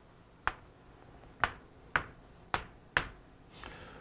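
Chalk drawing lines on a chalkboard: five sharp taps as the chalk strikes the board, with faint scraping between them.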